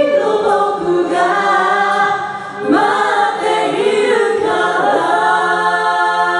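Mixed a cappella vocal group of men and women singing in close harmony through microphones, with a low bass line under the upper voices, settling into a sustained chord about five seconds in.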